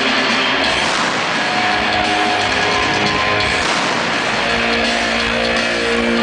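A hard rock band playing live and loud, with electric guitars and drums, heard from within the crowd.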